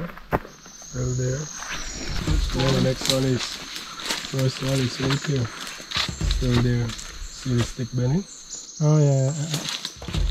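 Men talking, their words not made out. A thin, steady high-pitched tone sounds behind them near the start and again near the end.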